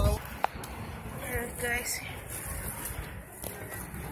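A person's voice speaking briefly about a second in, over a steady low rumble, with a single sharp click about half a second in.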